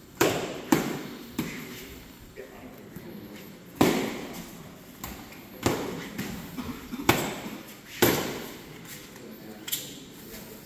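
Padded sparring sticks striking one another and the fighters in double-stick arnis sparring: about eight sharp, irregular knocks, each followed by a short echo in a large hall.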